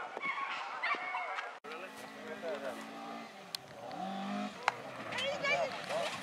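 Voices of bystanders, then after a cut a rally car's engine running steady and then revving up in pitch about four seconds in, with a few sharp knocks and voices over it.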